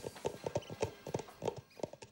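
A quick, uneven run of hollow knocks, several a second, the loudest falling about three times a second.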